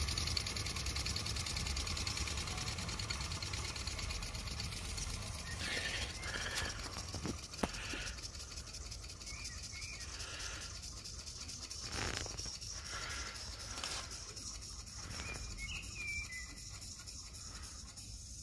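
Mamod model steam traction engine running under steam, its small oscillating cylinder chuffing in a fast, even beat with a hiss of steam. It grows slowly fainter as the engine drives away.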